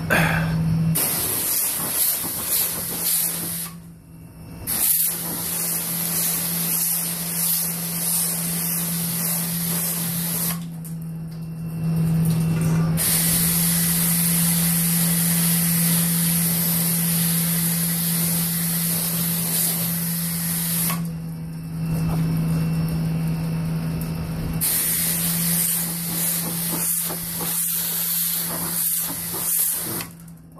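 High-pressure water jet spraying hard against the walls and fill inside a cooling tower: a loud, steady hiss that stops briefly three times, over a steady low hum.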